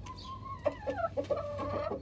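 Domestic chickens clucking: a held note at the start, then a run of short, quick clucks from about half a second in.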